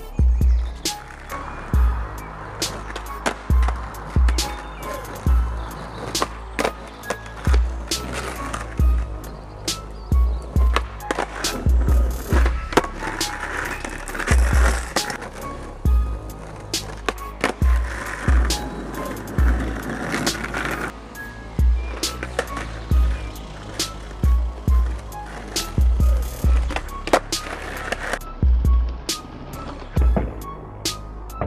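Skateboard on asphalt during repeated varial flip attempts: wheels rolling, with many sharp pops and clacks as the tail snaps and the board lands. Music with a steady bass beat plays under it.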